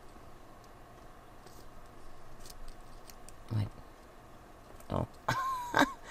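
Faint rustling and a few light clicks of thin paper strips being handled and pressed down on card stock.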